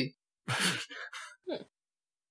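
A person's breathy exhale close to a microphone, like a sigh, about half a second in, followed by a brief voiced sound with falling pitch a second later.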